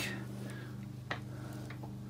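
A steady low hum made of several fixed tones, with one faint click about a second in.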